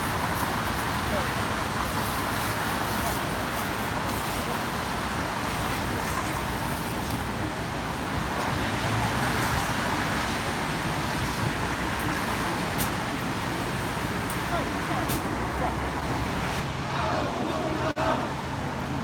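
Steady city traffic noise mixed with indistinct talk from people standing close by.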